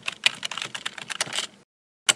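Computer keyboard typing: a quick, uneven run of key clicks that stops about one and a half seconds in.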